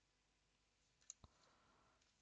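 Very faint handling of nail-stamping tools: two quick clicks about a second in, the second a light knock, then a brief faint rubbing as the silicone stamper picks the design off the metal plate.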